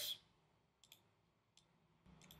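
Near silence with a few faint computer mouse clicks, once about a second in and twice more shortly after.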